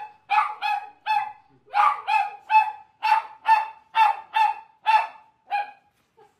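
A dog barking rapidly and excitedly, a quick string of high, sharp barks at about three a second.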